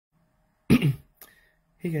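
A person coughs: one short, loud cough in two quick bursts about three quarters of a second in.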